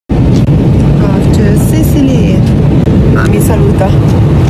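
Loud, steady low rumble of an airliner's passenger cabin, with voices talking softly under the noise.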